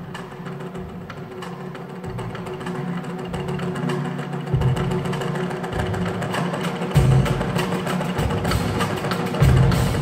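Live percussion ensemble of Japanese taiko drums, cymbals and a drum kit playing fast, light strikes that grow steadily louder, with deep drum hits coming in from about halfway.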